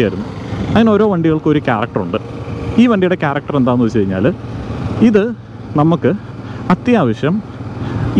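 A man talking in bursts throughout, over a steady low vehicle and road noise from the ride.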